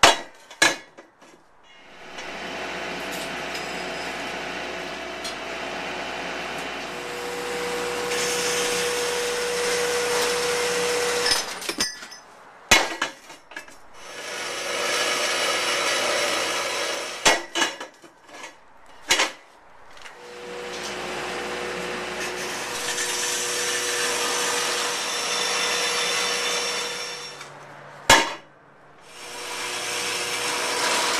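Metal-cutting band saw cutting through steel tubing in three long passes, with a thin steady whine during the first and last. Sharp metal clanks fall between the cuts.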